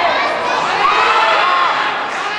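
Crowd of spectators shouting and cheering, many voices at once, with a few louder calls standing out about a second in.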